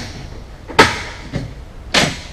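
Padded boat sun-pad panel being flipped over and handled on a fibreglass deck: several sharp thumps and knocks, roughly every half second to second.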